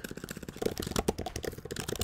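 Typing on a computer keyboard: a quick run of key clicks.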